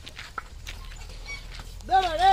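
A bullock cart moving with a few faint knocks, then near the end a loud, wavering call from a man's voice, a drover calling out to the bullocks.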